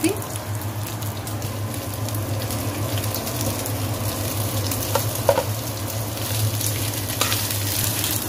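Rice sizzling in hot oil in a non-stick kadai as it is stirred with a spatula, with a steady low hum underneath and a few short knocks of the spatula against the pan in the second half.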